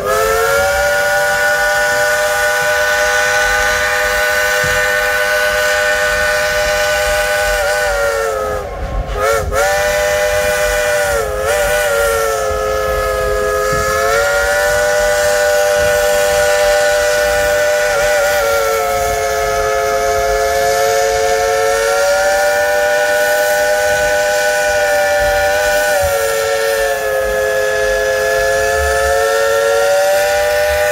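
Klondike Katie, a 1943 Baldwin 2-8-2 steam locomotive, blowing its chime whistle in one very long blast of several notes sounding together, its pitch sagging and rising several times, with two short breaks about nine and eleven seconds in. The whistle is the locomotive's thank-you to the passengers.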